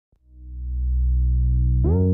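Opening of an electronic track: a low, sustained synthesizer note fades in and holds steady, and a brighter synth note with a sharp attack comes in near the end.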